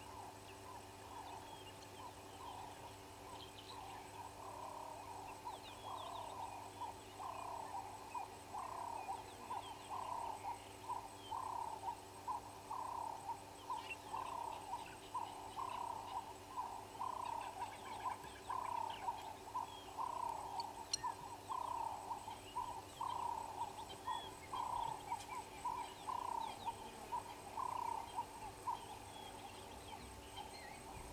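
An animal's call repeated about once a second, growing louder from a few seconds in, with faint higher bird chirps scattered around it.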